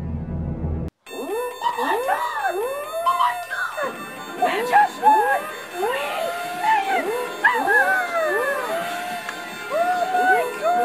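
Tense music cuts off about a second in. Then many overlapping rising-and-falling whoops and screams go on without a break, excited cries greeting a big win.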